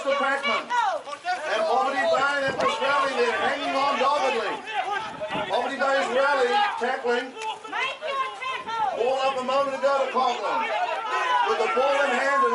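Voices talking over one another throughout, with no single clear speaker.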